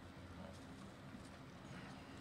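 Faint outdoor background in a pause between speech: a low steady hum with a few soft clip-clop-like knocks.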